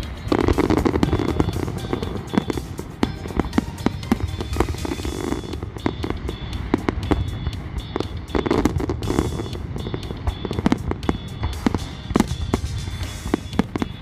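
Aerial fireworks exploding in rapid, dense volleys: a continuous run of sharp bangs and cracks, several a second, with heavier barrages about half a second in and again at about eight and a half seconds.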